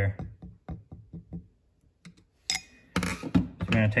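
Light metal clicks of a small pick tool working at the rubber piston seal inside a two-piston brake caliper bore. A sharper knock comes about two and a half seconds in, with a brief clatter just after.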